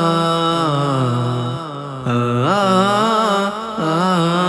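Layered male voices singing a wordless melody in a Bangla gojol (Islamic devotional song). The notes are held and slide slowly downward, with a brief dip and then an upward swoop a little past halfway.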